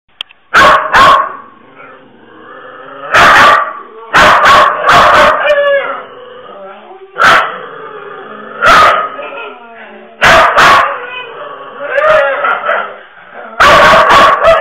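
Dogs barking sharply in irregular bursts: about a dozen loud barks, singly and in pairs, with quieter whining vocal sounds between them.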